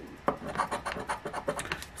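Coin scraping the latex coating off a paper scratch-off lottery ticket, in quick repeated strokes.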